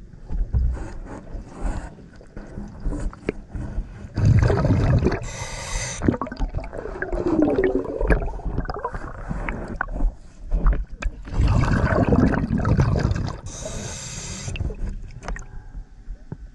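A scuba diver breathing through a regulator underwater: two full breaths about seven seconds apart, each a loud rush of exhaled bubbles with a short hiss, and gurgling and small knocks against the hull in between.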